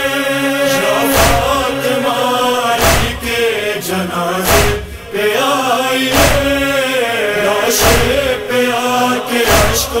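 A chorus of voices chants a drawn-out refrain without clear words between verses of an Urdu noha, over a deep thump that keeps time about every second and a half, six beats in all.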